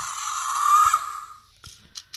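Fingerlings Untamed Raptor animatronic toy giving a hissing dinosaur screech through its small speaker, jaw open, fading out about one and a half seconds in.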